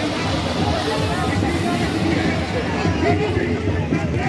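A crowd of men talking and calling out over one another: a dense, steady babble of voices.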